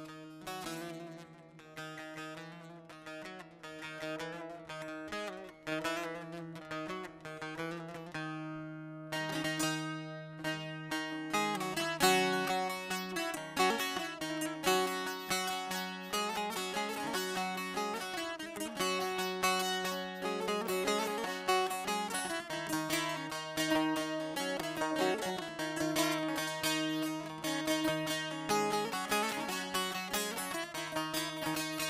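Saz (bağlama) playing the instrumental opening of a divan-style aşık tune: plucked melody notes over a steady open-string drone. It starts sparse, grows faster and denser about nine seconds in, and louder a few seconds after that.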